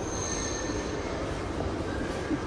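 Steady background noise of a large terminal hall, with a faint high-pitched whine during the first second.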